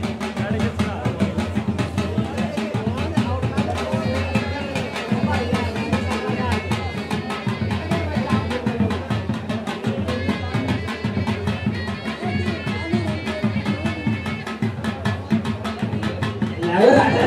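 Traditional dhol drums beaten in a rapid, steady rhythm, with crowd voices underneath.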